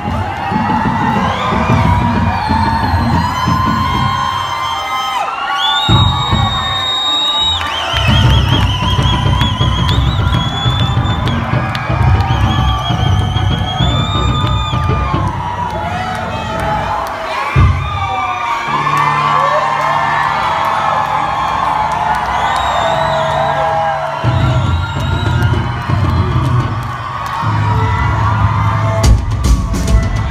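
Live rock band heard loud through a concert PA from the audience: sustained, wavering electric guitar tones over heavy held bass notes, with the crowd cheering and whooping. A run of sharp, regular hits starts near the end.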